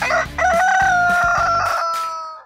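A rooster crowing once: a short rising start, then one long held call that falls slowly in pitch. Backing music runs quietly underneath and drops out near the end.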